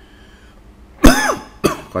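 A man coughing twice, the first cough about a second in being the loudest, the second shorter, from something caught in his throat.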